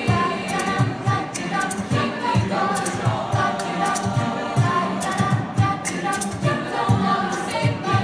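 High school vocal jazz choir singing in harmony into microphones, with a steady low beat about twice a second underneath.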